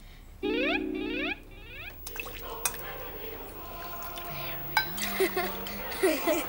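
A short musical sting about half a second in. Then punch is ladled and poured into glasses, with small glass clinks, over quiet party chatter and soft background music.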